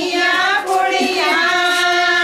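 Women singing a Punjabi suhag wedding folk song in high voices, on long held notes that waver, with short breaks between phrases.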